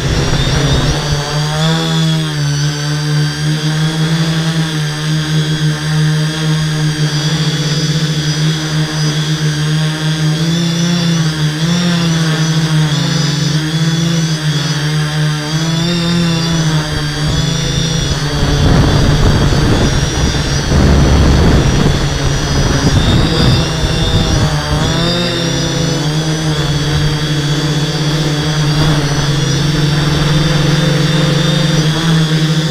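Multirotor drone's electric motors and propellers buzzing close to the onboard camera, their pitch wavering up and down as the flight controller changes motor speeds. A rougher, louder rush of noise comes in about two-thirds of the way through.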